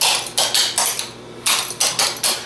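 Clogging taps on a wooden floor in quick clusters of sharp clicks, the stomps and double steps of a right-foot stomp run. A short pause comes about a second in.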